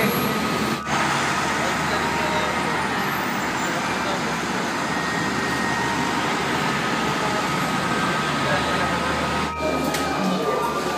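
Steady, even wash of heavy road traffic heard from above: many slow-moving cars, minibuses and buses blending into one continuous noise.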